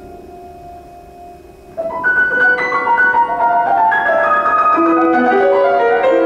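Grand piano playing solo: a soft held chord fades, then about two seconds in a loud, busy passage of fast overlapping notes begins and carries on.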